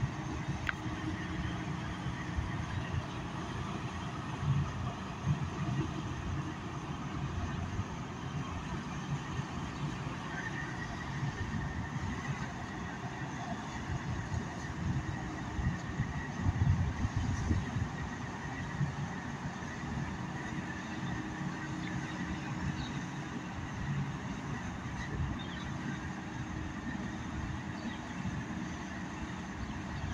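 Steady, uneven low rumble of the bulk carrier Federal Churchill's diesel engine and machinery as the ship moves slowly past close by, with a faint steady tone above it.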